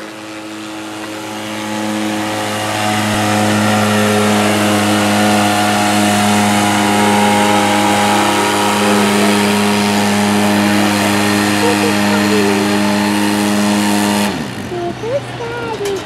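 ATV engine running hard at steady, high revs under load while dragging a weight-transfer pulling sled. It builds over the first few seconds, holds level, then drops away suddenly near the end as the pull finishes.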